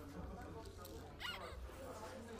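A small plastic drink pouch being sucked and squeezed, with a short rising squeak just past the middle.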